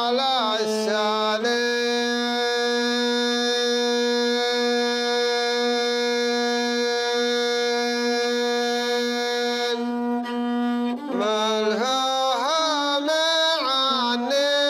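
Bedouin rababa, a single-string bowed fiddle with a skin-covered frame, being played: a short sliding phrase, then one long note held steady for about eight seconds, then the wavering, sliding melody returns near the end.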